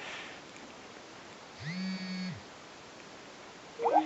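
Faint line hiss from a dropped audio connection, with one short electronic tone about halfway through, under a second long. It marks the recording being cut off by an incoming phone call.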